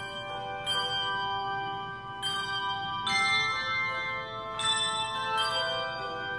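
Handbell choir ringing a hymn in chords: a new chord is struck about every second, and each rings on under the next.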